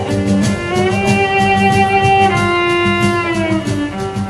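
Live rock band playing an instrumental passage with no vocals: drums and bass keep a steady beat under a sustained lead melody that slides between held notes.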